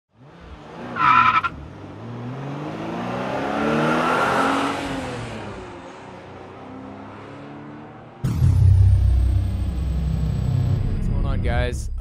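Car sound effects in an intro: a brief tyre squeal about a second in, an engine note that rises and then falls, then a sudden loud low engine rumble about eight seconds in.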